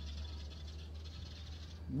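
A pause in speech with background sound: a steady low hum and a high, even insect-like chirring that fades just before speech resumes at the end.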